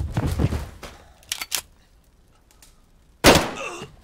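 A violent struggle: a burst of scuffling and thuds, two sharp knocks, then a loud blow about three seconds in with a short metallic ring, as a metal bucket strikes a man.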